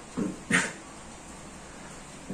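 A dog making two short barks, about a third of a second apart.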